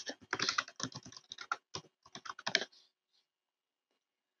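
Computer keyboard typing: a quick run of keystrokes as a single word is typed, stopping about two and a half seconds in.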